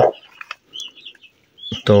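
A few faint, short, high peeps from newly hatched chicken chicks under the hen.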